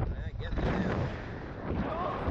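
Wind buffeting the onboard camera microphone of a SlingShot ride capsule as it swings through the air, a heavy rumble that swells and dips unevenly. Riders' voices break in briefly near the start and again near the end.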